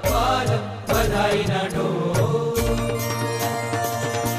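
Hindu devotional music: a chanted vocal line over instruments for the first half, then sustained instrumental tones with a steady beat of percussion strikes.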